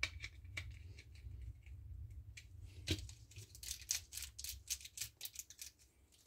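Small precision screwdriver turning a screw into red plastic model parts, and the plastic pieces being handled, giving a run of small clicks and ticks that gets busier in the second half, over a low steady hum.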